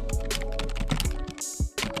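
Keyboard-typing sound effect: a quick, irregular run of key clicks over background music.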